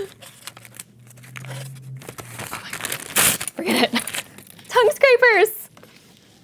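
Paper bag crinkling and rustling as it is opened and pulled apart by hand, with many quick crackles over the first few seconds. In the second half, excited high-pitched wordless vocal exclamations from a woman.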